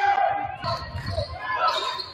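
A basketball bouncing on a hardwood gym floor during play, with players' and spectators' voices.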